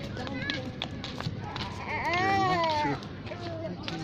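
Voices, with one high voice held for about a second midway, its pitch rising and then falling.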